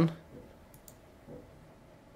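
A computer mouse button clicking once a little under a second in, heard as two short, quick clicks from the press and release, against quiet room tone.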